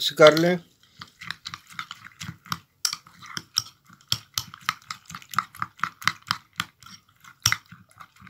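A metal spoon beating a wet mixture of egg yolk, milk and chopped dry fruit in a bowl: quick repeated clicks and squelches of the spoon against the bowl, about three or four strokes a second.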